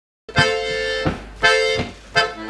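Button accordion playing two held chords, the first starting about a quarter second in and the second about a second and a half in, each opening with a short bass note.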